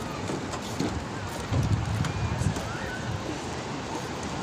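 Outdoor seaside ambience: wind buffeting the phone's microphone, rumbling most strongly from about one and a half to two and a half seconds in, over a background of distant voices.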